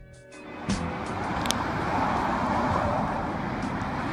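Music ending, then a steady rushing outdoor background noise starting a little under a second in and running on evenly.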